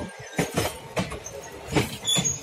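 ICF passenger coaches passing close by at speed, their wheels clattering over the rail joints in sharp, uneven clacks over a steady rumble.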